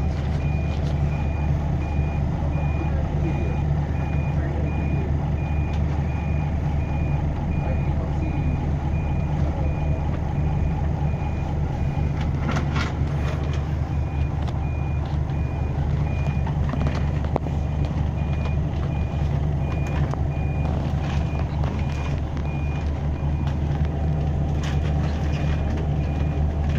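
Bus engine running steadily, heard from inside the bus, with a reversing alarm giving a long even series of high beeps as the bus backs out.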